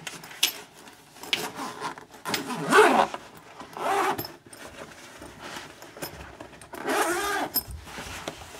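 Zipper of a soft guitar gig bag being pulled open, with rustling and handling knocks as the guitar is taken out.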